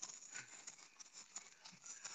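Near silence, with a few faint scattered clicks and rustles.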